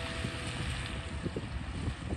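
A car driving away on a wet road, its tyre hiss fading from about a second in, with wind gusting on the microphone.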